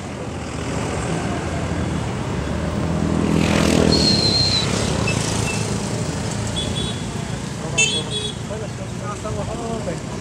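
Street traffic with a motor vehicle's engine passing close by: it swells to its loudest about three to four seconds in, then fades. A brief high tone sounds just after the loudest point.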